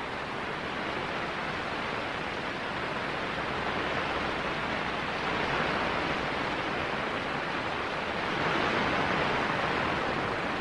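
Jupiter's decametric radio emission (L-bursts) played back as shortwave receiver static: a steady hiss whose loudness rises and falls in slow waves, swelling around the middle and again near the end. The swells are the bursts from Jupiter.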